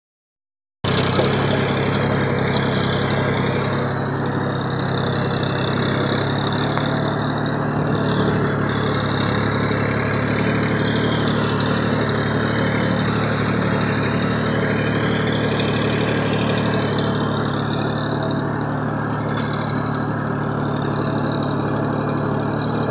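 Massey Ferguson tractor's diesel engine running steadily under load as the tractor pulls a tillage implement through a ploughed field, heard close up from the driver's seat.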